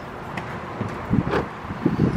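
Wind rumbling on a handheld camera's microphone, with a few faint short taps.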